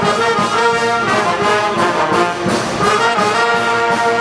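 A university band's brass section, with trumpets and other horns, playing a tune in held notes that change every second or so.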